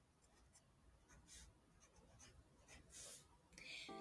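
Faint scratching of a pen writing numbers on notebook paper, in a few short strokes.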